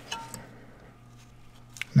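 Faint clicks and a brief scrape of a parking brake cable and its plastic sleeve end being worked by gloved hands through the slot in a rear brake caliper's bracket. The scrape comes near the start, with a few light ticks after it.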